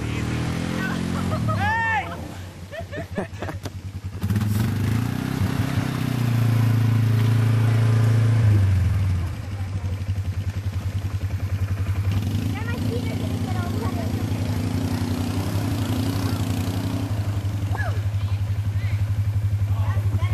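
Quad (ATV) engine running. It revs up about four seconds in, holds higher until near nine seconds, then settles back to a steady lower run.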